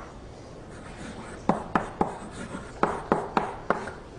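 Chalk writing on a blackboard as an equation is written out, heard as short, sharp taps and strokes: three close together about a second and a half in, then four more near the end.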